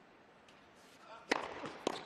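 A tennis serve struck hard off the racket, then a second sharp racket-on-ball hit about half a second later as the returner stretches to get it back. The first hit is the loudest.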